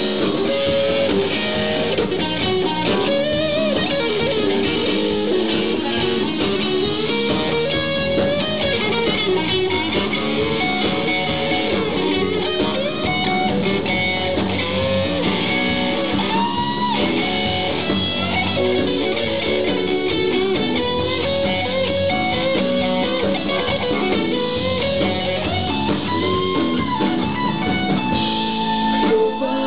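Live blues-rock band playing an instrumental passage: electric guitar, electric bass and drum kit, with a winding melodic lead line over them and no singing.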